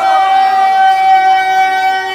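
Public-address feedback: a loud, steady high howl from the microphone system that holds one pitch without wavering, with men's voices shouting praise over it.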